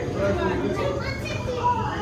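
Indistinct chatter of people, children's voices among them, over a steady low hum.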